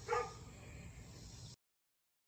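A single short, high yip, a small dog barking once. Faint background noise follows, then the sound cuts off to silence about one and a half seconds in.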